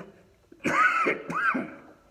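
A man clearing his throat with two coughs, the first a little over half a second in and the second just after.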